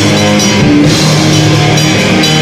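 Grindcore band playing live: heavily distorted electric guitar and bass chords over a drum kit, loud and unbroken, shifting chords every fraction of a second.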